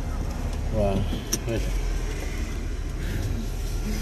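Steady low rumble of a car's engine and road noise heard from inside the cabin, with a voice speaking briefly about a second in and a sharp click just after.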